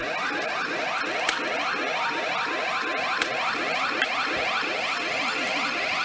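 Electronic sound effect from a CR Great Ocean Story 4 pachinko machine: a warbling, alarm-like tone that repeats several times a second without a break.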